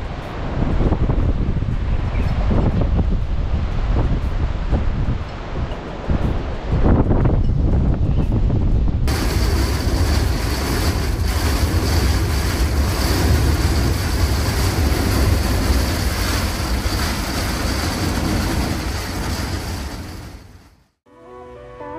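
Storm wind blowing hard and gusting on the microphone at the coast. About nine seconds in it cuts to a steadier, brighter rush of storm rain and wind heard from inside the motorhome, which fades out at the end.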